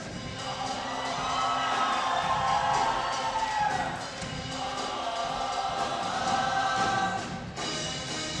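Show choir singing in harmony, holding long notes that swell and glide, with a short break in the sound just before the end.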